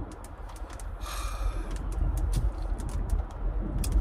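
Car cabin noise while driving: a steady low road and engine rumble, with scattered light ticks and a brief hiss about a second in.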